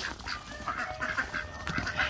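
A small flock of domestic ducks quacking softly.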